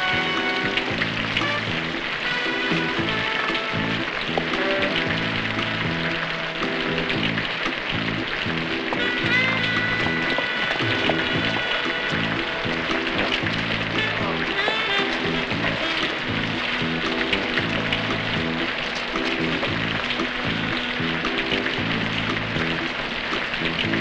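Film score music with repeated low notes, over the steady hiss of falling rain.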